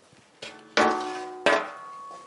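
Sheet aluminium engine bay cover knocked twice, about three-quarters of a second in and again under a second later, each knock ringing out with several tones that fade slowly.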